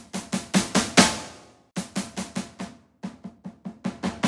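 Heavily processed sampled snare drum from the Colossal Hybrid Drums virtual instrument, struck in quick runs at varying velocity. The first run builds to a loud hit about a second in that rings out, and two softer runs follow.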